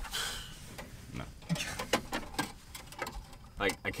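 Handling noise from a car radio head unit being worked into the dash: a brief plastic rustle at the start, then scattered small clicks and taps of plastic and wiring.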